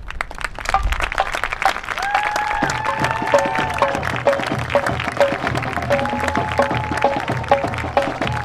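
Crowd applauding at the close of a marching band show. About two seconds in, the band starts playing over the applause: held brass-like notes over a steady low drum beat.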